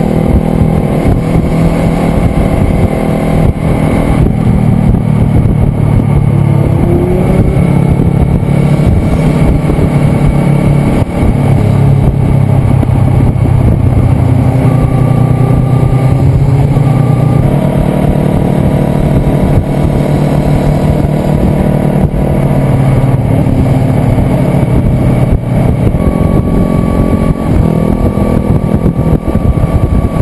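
Sport motorcycle engines running at cruising speed, heard from a bike-mounted camera with steady wind and road noise. The engine note shifts up and down in pitch a few times as the throttle changes.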